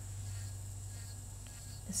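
Electric nail file (e-file) running steadily at about 15,000 RPM with a medium diamond ball bit, working dead cuticle skin in circular motions: a low steady hum with a faint high whine.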